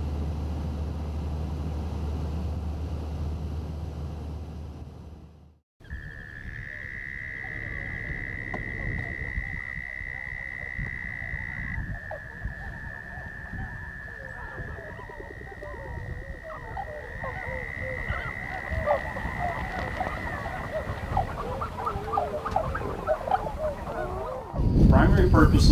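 A small plane's engine drones steadily, heard from inside the cabin, and cuts off about five seconds in. Then comes a marsh frog chorus: long, steady, overlapping high trills that shift pitch now and then, with many short chirping calls that grow busier toward the end.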